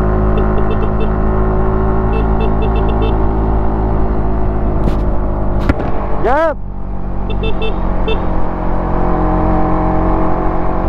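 Suzuki Raider 150 Fi single-cylinder motorcycle engine running at a steady cruise under the rider. About six and a half seconds in it gives a brief rev up and down, just after a couple of sharp clicks.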